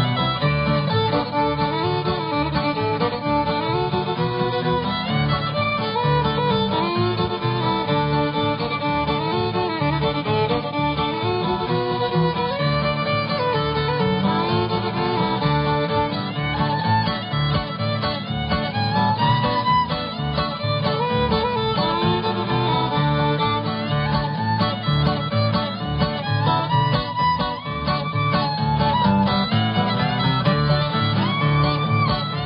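Fiddle playing a bluegrass-style tune in a contest performance, with a steady guitar rhythm backing.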